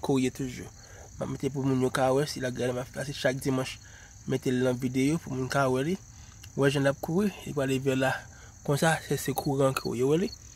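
Crickets chirring in a steady high band, under stretches of a voice talking that come and go.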